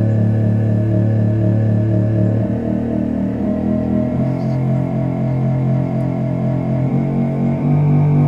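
Computer MIDI synth strings playing a sonification of ultraviolet (UV-B) sunlight readings, with note pitches set by how much UV the passing clouds let through. A run of quick notes, about four a second, plays over a sustained low note that steps up in pitch about two and a half seconds in and again near the end.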